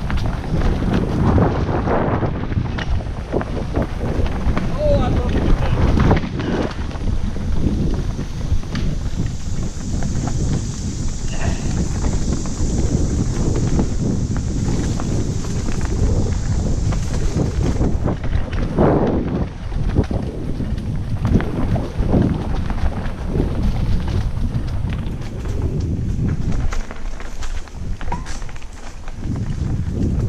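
Wind buffeting a helmet-mounted GoPro's microphone as a mountain bike rolls downhill over dirt singletrack, with many knocks and rattles from the bike over bumps. A steady high hiss runs for about ten seconds in the middle.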